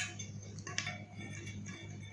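A few faint clicks from a plastic tube spinner toy being handled and set on a glass tabletop, over a low steady hum.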